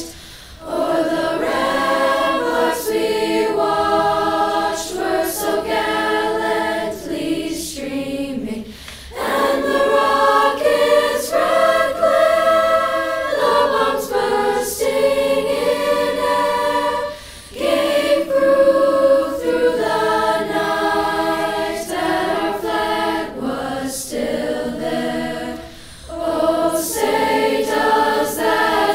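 A choir of voices singing together in long phrases of about eight seconds, with short breaks for breath between them.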